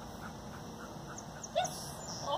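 A dog gives a single short whine about one and a half seconds in, against a quiet outdoor background.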